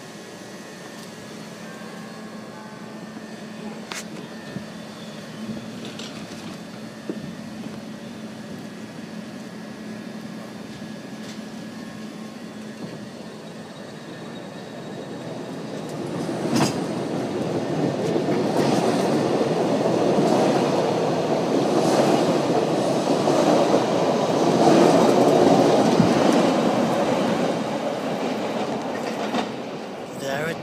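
Chicago 'L' electric rapid-transit train standing at the platform with a steady hum. About halfway through it pulls out, and its wheel and track noise grows loud, with repeated knocks as it gathers speed, then begins to fade near the end.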